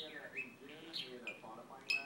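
Budgerigar warbling: a continuous run of mumbled, speech-like chatter mixed with short high chirps, with a couple of sharp clicks near the end.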